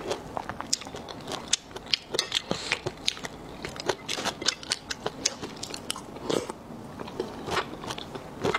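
Close-miked chewing of raw soy-sauce-marinated tiger shrimp: a dense run of irregular wet clicks and crunches, several a second.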